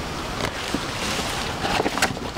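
Large fresh banana leaves rustling and crackling as they are folded and stacked by hand, in a few short bursts, the loudest near the end, over a steady rush of wind on the microphone.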